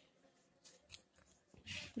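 Faint scrape of a knife blade shaving the cut end of a thin fruit-tree branch in a few short strokes, as the slanting cut for an improved whip-and-tongue graft is trimmed level.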